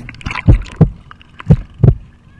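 Heartbeat sound effect: two pairs of low, lub-dub thumps, about one pair a second.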